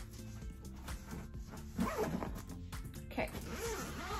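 Zipper on a fabric suitcase pocket being pulled closed, with quiet background music underneath.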